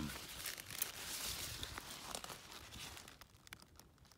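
Broccoli leaves rustling and crinkling as they are handled and pushed aside, with a few light ticks. It dies down about three seconds in.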